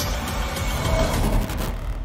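Trailer sound design: a dense, low rumbling swell under music, building and then cutting off abruptly just before the end.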